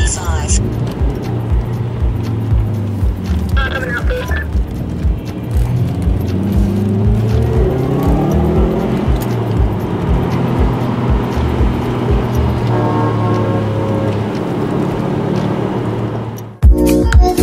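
Subaru Impreza WR1's engine heard from inside its cabin, running steadily and rising in pitch as the car accelerates about halfway through, with music with a steady beat playing over it.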